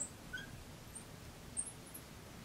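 Felt-tip marker squeaking faintly on a glass writing board as a word is written: a few short, high chirps over a quiet background.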